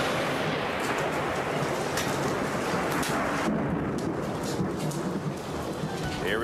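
Heavy rain with thunder, a storm's sound played on a TV weather broadcast. The sound is dense and loud, with a few sharp cracks, and turns duller about three and a half seconds in.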